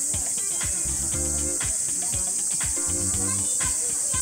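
Steady high-pitched drone of cicadas, with background music that has a steady beat.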